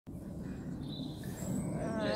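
Steady outdoor background noise with a few brief, thin high bird chirps about a second in, and a voice starting near the end.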